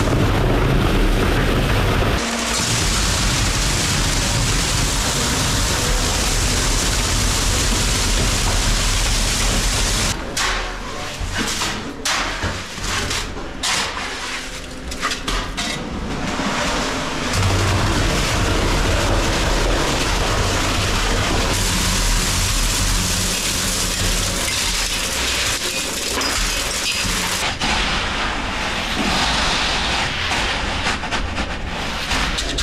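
Wet concrete dropped down a shaft, splattering onto a wet slab inside a corrugated steel pipe. The noise is dense and continuous and changes abruptly several times; between about ten and sixteen seconds in, it breaks into uneven separate splats.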